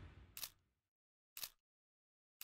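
Countdown sound effect: a short sharp click once a second, twice in all, as the preceding music fades out.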